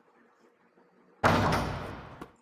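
A sudden loud hit about a second in, fading out over about a second: a sound effect laid over the animated basketball shot as the ball reaches the hoop.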